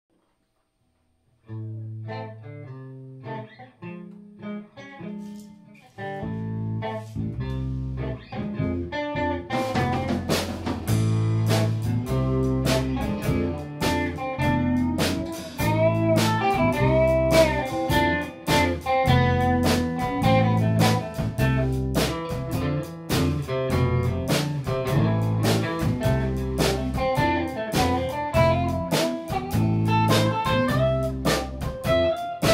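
Live blues-rock band playing an instrumental intro. A guitar starts alone about a second and a half in, bass comes in around six seconds, and the drum kit joins near ten seconds for the full band.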